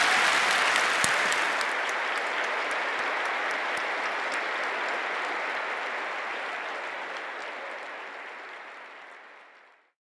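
A large audience applauding, loudest at the start and slowly dying away until it fades out just before the end.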